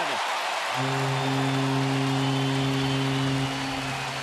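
A ballpark crowd cheering a home-team home run, with a held chord of several low notes over the stadium sound system that starts about a second in and stops near the end.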